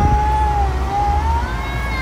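Low, steady rumble of a car on the move, heard from inside the cabin, with one long, high tone that wavers slowly down and back up.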